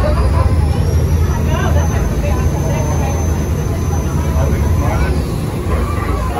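Steady low rumble of a passenger ferryboat's engine under the chatter of passengers on deck. A thin high whine holds and then falls away about five seconds in.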